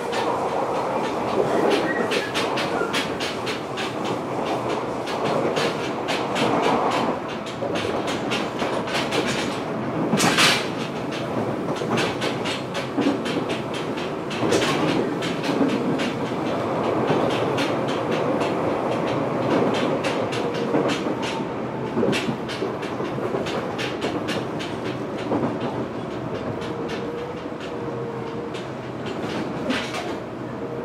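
Running sound heard inside a Fukuoka City Subway 1000N-series car at speed: a rapid, continuous run of wheel clicks over the track above a steady rumble of the running gear. A louder clatter comes about ten seconds in.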